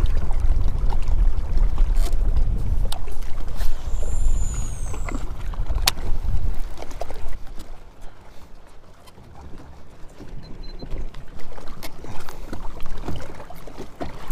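Gusty wind rumbling on the microphone over choppy water lapping at a bass boat's hull, with a few sharp clicks. The wind rumble eases about halfway through.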